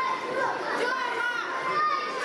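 Many high children's voices shouting and calling at once, overlapping so that no words stand out, in a large hall.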